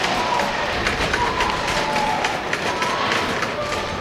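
Flatbed warehouse trolley rolling fast over a concrete floor: a steady rattling rumble from its casters, with a faint wavering whine.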